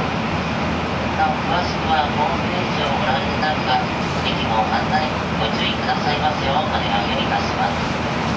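Steady running noise inside an N700A Shinkansen car, with an indistinct voice speaking over it.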